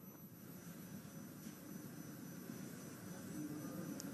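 Faint steady electrical hum and hiss with a thin high-pitched whine.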